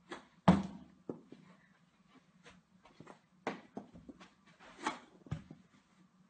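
Knee-hockey play: a string of sharp, irregular knocks and clacks from mini hockey sticks and the ball, the loudest about half a second in.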